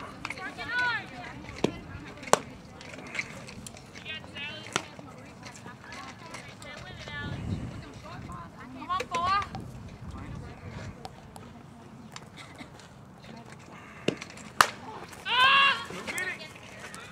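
High-pitched girls' voices calling out and cheering in short bursts, with a few sharp knocks between them. The loudest knock, a sharp crack, comes near the end and is followed at once by a loud shout of voices.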